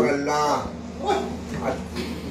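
A man's voice: a chanted phrase of recitation ending in the first half-second, then a couple of short vocal sounds with quieter gaps between them.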